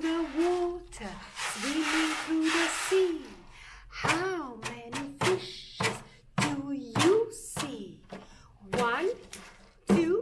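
An ocean drum tilted so the beads inside roll across the head, making a rushing, wave-like sound for a couple of seconds under a woman's held hummed note. It is followed by her short sliding vocal calls mixed with a few sharp knocks.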